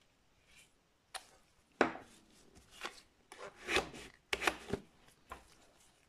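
Nail polish being worked across a steel nail-stamping plate: about six short rasping scrapes, with a few light knocks on the metal, loudest around the middle.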